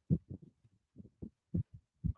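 Faint, muffled voice: a string of short, low syllables with no clear words, as if heard through a poor call line.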